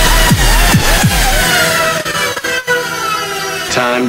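Turntablist performance: an electronic beat with heavy bass and repeated falling bass sweeps, cut and manipulated on turntables. About halfway the bass drops out and a long tone glides steadily down in pitch, and a spoken vocal sample comes in right at the end.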